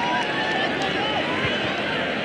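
Large crowd of spectators chattering, with many overlapping voices and a few rising briefly above the rest.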